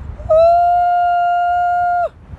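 A woman's long, steady, high-pitched cry of excitement, held for about a second and a half and sliding down in pitch as it ends, over wind rumble on the microphone.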